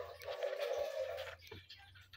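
Ballpoint pen writing on paper: a soft scratching of the tip across the sheet that stops about one and a half seconds in, followed by a few faint ticks.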